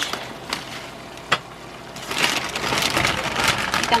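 Plastic bag of baby spinach crinkling and leaves rustling as the spinach is tipped into a frying pan, getting louder and denser about halfway through, with a sharp click just after a second in.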